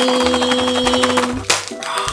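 Foil candy wrapper crinkling as a foil-wrapped chocolate is unwrapped by hand. It sounds over a held note that stops about one and a half seconds in.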